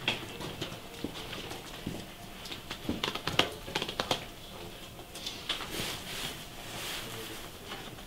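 LP record sleeves being flipped through in a shop bin: a run of soft taps and clacks, busiest about three to four seconds in.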